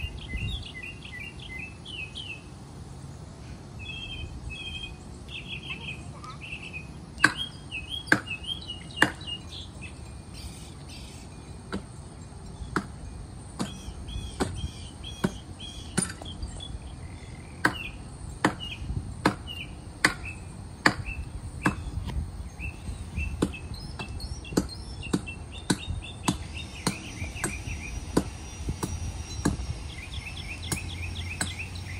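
Axe blows chopping into a tree trunk, starting about seven seconds in and repeating roughly once a second, with a short pause after the first three. Birds chirp throughout.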